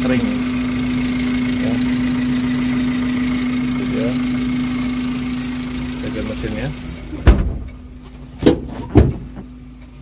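Suzuki Carry Futura's 1.5-litre fuel-injected four-cylinder engine idling smoothly and steadily. About seven seconds in its sound drops away and three loud thumps follow over the next two seconds.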